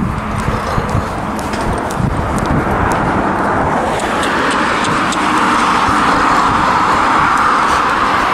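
Road traffic noise from a car approaching along the road, growing louder from about halfway through, over footsteps on a tarmac footpath.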